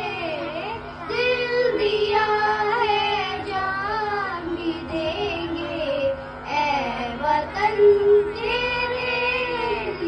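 Young girls singing a Hindi patriotic song into a handheld microphone, the melody held in phrases of a few seconds with short breaths between.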